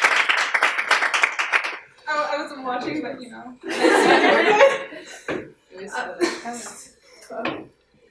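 A small audience clapping rapidly for about two seconds, then laughter and indistinct voices in a room.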